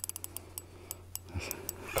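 Spinning reel on an ice-fishing rod ticking rapidly for a moment, then a few scattered clicks, while a hooked fish, taken for a pike, is played on the line.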